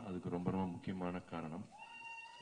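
A man speaking into a microphone in short phrases. Near the end a steady high-pitched tone comes in and holds.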